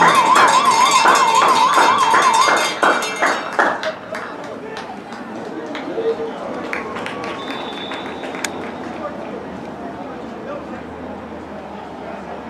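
Cowbell rung rapidly, about three strokes a second, over a warbling tone and spectator noise. About three seconds in, the ringing stops and lower crowd chatter with scattered voices carries on.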